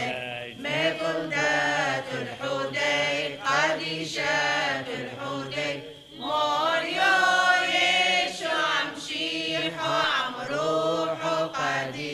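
Syriac Orthodox liturgical chant: voices singing long, melismatic phrases with short breaths between them.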